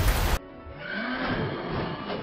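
Fight-scene soundtrack music from an animated series. Just under half a second in, the audio cuts abruptly to a quieter, duller passage with music and a single rising-and-falling creature cry, the shriek of the Nevermore, a giant bird monster.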